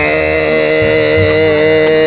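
A long, steady held note that does not change in pitch.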